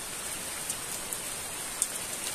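Steady rain falling, with a few scattered drips and one sharper drop tap near the end.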